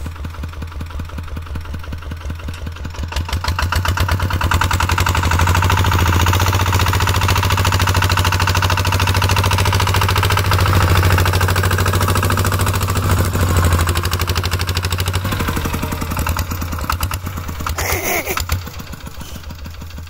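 Single-cylinder diesel engine of a Kubota-type two-wheel walking tractor pulling a loaded trailer, running with a rapid, steady putter. It grows louder a few seconds in as the tractor comes close, then fades after about fifteen seconds as it moves away.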